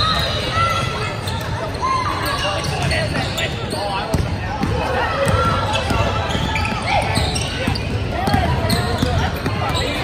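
Basketball game sounds: a ball dribbled on a hardwood court, sneakers squeaking, and players and spectators calling out.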